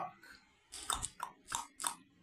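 Typing on a phone's on-screen keyboard: a quick run of about six short, sharp taps in the second half.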